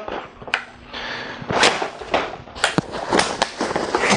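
Bugaboo Ant compact stroller being lifted upright after unfolding: a handful of sharp clicks and knocks from its frame and wheels, with rustling handling noise between them.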